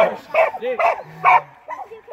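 A catch dog whining in about three short, pitched yips as it holds a downed hog by the head.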